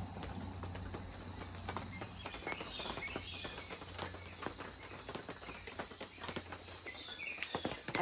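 Outdoor early-morning ambience of irregular light taps and ticks, with a few short bird chirps about three seconds in and again near the end.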